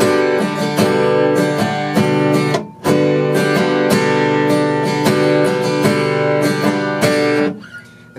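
Acoustic guitar being strummed in a steady rhythm of chords, with a brief stop about two and a half seconds in before the strumming resumes; the last chord dies away near the end.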